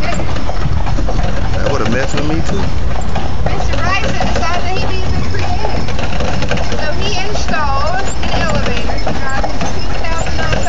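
A horse's hooves clip-clopping as a horse-drawn carriage rolls along, over a steady low rumble, with voices mixed in.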